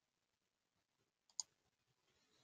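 A single computer mouse click about a second and a half in, against near silence.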